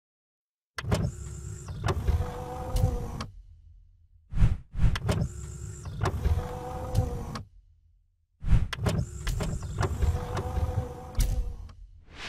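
Sound effects for an animated logo intro: three similar passes of mechanical whirring and sliding, each about three seconds long and studded with sharp clicks, with short whooshing swells between them, as cubes slide and lock into place.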